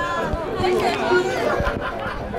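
Chatter of passers-by in a crowd, several voices talking over one another.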